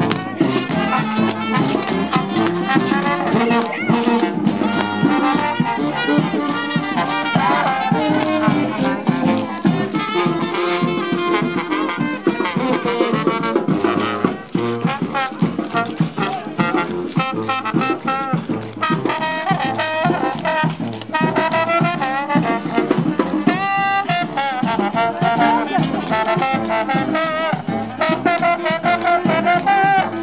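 A marching brass band with a sousaphone playing continuously.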